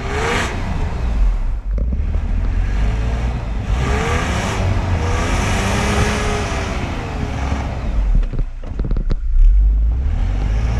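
Jeep Wrangler's engine revving up and down as it pushes through deep snow, its pitch rising and falling several times over a heavy low rumble. The engine drops off briefly twice and surges loudest near the end.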